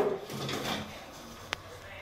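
Stainless-steel dish rack in a wall cabinet being moved by hand: a soft metallic sliding rattle, then one sharp click about one and a half seconds in.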